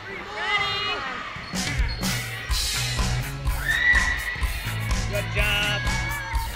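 Background pop music with a singer over a steady beat and bass line.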